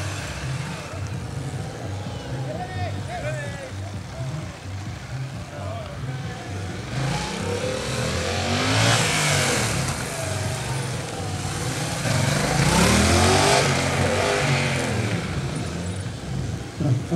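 Motorcycle engine revving up and falling back again and again as the bike accelerates and slows between tight turns of a cone course. It is loudest in two spells of hard throttle, about seven and twelve seconds in.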